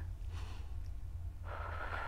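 A woman breathing out audibly while holding her legs raised in a Pilates leg exercise: a faint breath early on, then a longer, louder exhale starting about one and a half seconds in. A low steady hum lies underneath.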